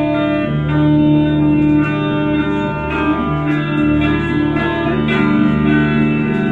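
Solo electric guitar played live, with sustained, ringing chords and held notes that change every second or so, and no singing.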